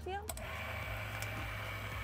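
A single spoken "yeah", then a steady low hum from the idling boat engine.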